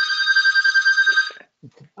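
A telephone ringing with an electronic trill, a steady pitched ring with a fast flutter. It cuts off about one and a half seconds in.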